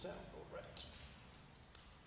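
A man's faint, murmured speech, with a few soft hissing 's' sounds.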